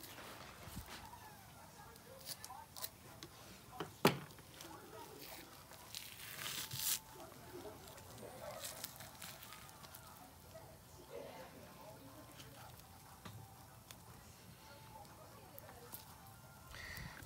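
Thick, leathery albacore tuna skin being peeled back from the flesh by gloved hands: faint tearing and crackling, with a sharp click about four seconds in and a louder rasp around six to seven seconds.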